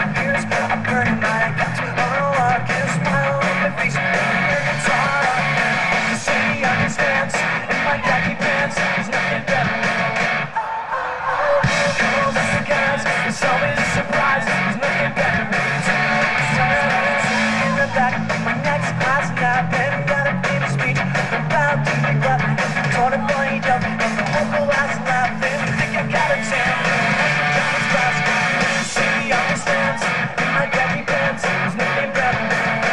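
Live pop-punk rock band playing, with strummed electric guitars, bass and a driving beat. About ten seconds in, the bass and low end drop out for about a second before the full band comes back in.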